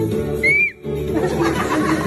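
A single short whistle note, rising slightly and then dropping off, about half a second in, over background music.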